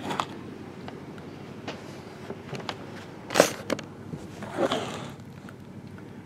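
Shrink-wrapped trading-card box being handled: faint ticks and rustling of the plastic wrap, with two louder rustling scrapes about three and a half and nearly five seconds in.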